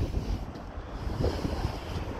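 Wind buffeting the microphone outdoors: an uneven, gusty low rumble.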